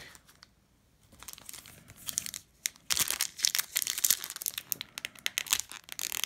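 Foil trading-card pack wrapper crinkling as it is handled and pulled open by hand: quiet for about the first second, light crackles, then a dense, louder run of crackling from about three seconds in.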